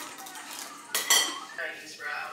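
Metal spoon scraping and clinking against a bowl while eating, with one sharp ringing clink about a second in.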